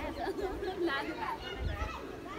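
Background chatter of several people talking at once, the voices overlapping.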